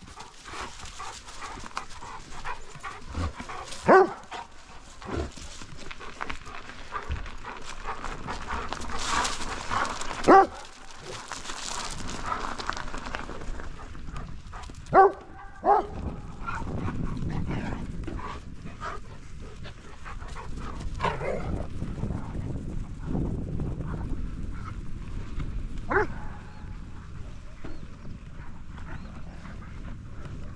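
A dog barking: about five single, sharp barks spaced several seconds apart, two of them in quick succession about halfway through, over a steady rushing background.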